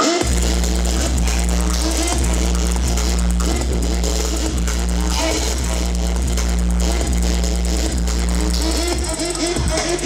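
Loud music with a deep, steady bass line that comes in at the start and thins out about nine seconds in.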